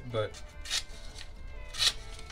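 Opinel No. 6 folding knife slicing through a sheet of paper: two short, crisp cuts about a second apart, the second louder.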